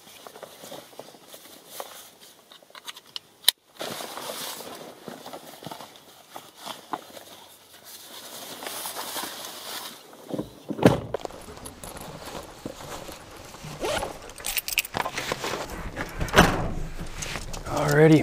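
Fabric of chest waders rustling as they are pulled up and strapped on, with scattered clicks of buckles and handling, one sharp click about three and a half seconds in. From about eleven seconds in the sound grows louder, with footsteps on gravel and more clicks and knocks.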